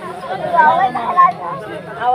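Chatter: voices talking at a moderate level, without a clear single speaker.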